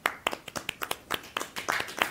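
Hands clapping in applause: a quick, uneven run of sharp claps.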